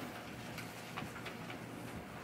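Quiet room tone with a few faint, short ticks.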